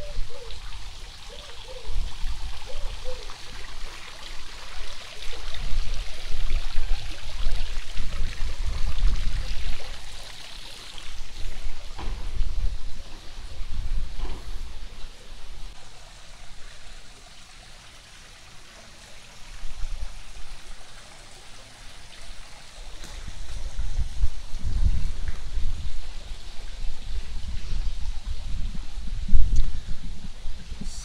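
Water from a tiered stone fountain splashing and trickling into its basin, loudest in roughly the first ten seconds and fainter after. Low gusts of wind rumble on the phone's microphone, coming and going.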